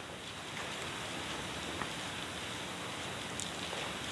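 Soft, steady rustle of Bible pages being turned to a passage, with a few faint ticks.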